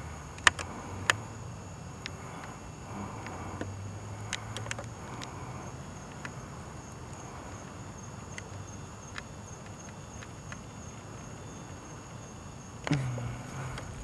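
Night-time outdoor ambience with a faint, steady, high-pitched drone of night insects. Scattered small clicks from the handheld camera sound through it, and a low hum comes up briefly a few seconds in. A short louder noise comes about a second before the end.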